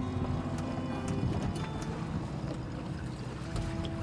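Low, steady hum of a boat motor running at idle as the boat eases alongside another. Soft background music plays under it, with a new sustained note coming in near the end.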